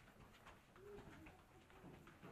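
Faint footsteps of people walking through a stone tunnel, with a pigeon giving a short low coo about a second in and another near the end.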